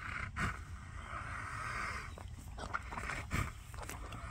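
A horse breathing hard through flared nostrils right at the microphone: several long, airy breaths in and out, the longest lasting about a second. The breathing is labored, a sign that the horse is struggling. A couple of brief knocks sound near the start and shortly after three seconds in.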